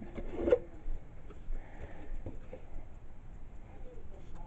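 Cardboard packaging being handled: a brief scrape and rustle about half a second in, then a few light taps and knocks.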